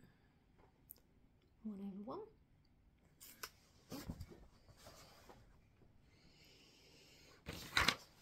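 Large piece of cross-stitch fabric being handled and folded, rustling and crinkling in several bursts, with the loudest rustle just before the end.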